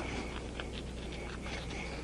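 Faint light clicks and rustles of small balls and pins being handled while a model is put together, over a steady low electrical hum.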